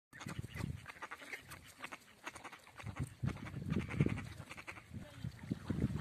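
Waterfowl calling: short, low calls come again and again, loudest about halfway through and again near the end, with groups of quick soft clicks between them.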